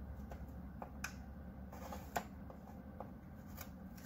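Faint handling of paper and a scoring tool on a scoring board: light scraping with a few small clicks, the sharpest about two seconds in.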